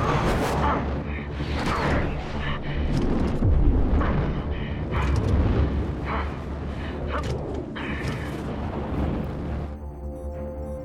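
Film soundtrack of an F/A-18 Super Hornet flying low and fast: a deep jet-engine rumble with rushing whooshes about once a second, over a film score. Near the end the jet noise drops away, leaving the score's tones.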